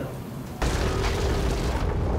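An outro logo-sting sound effect: a deep boom that hits suddenly about half a second in and carries on as a steady low rumble.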